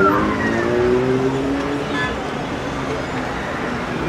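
City street traffic: cars driving past through an intersection over a steady hum of road noise. People's voices are mixed in during the first second or so.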